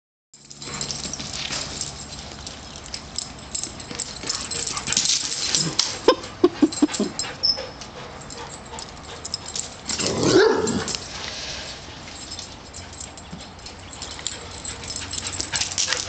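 A giant schnauzer and a greyhound mix playing, with scuffling and clicking throughout. A quick run of about five short dog calls comes about six seconds in, and one longer call comes around ten seconds.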